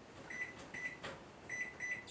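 Over-the-range microwave keypad beeping as buttons are pressed to set a cooking timer: four short, high beeps, with a faint click between the second and third.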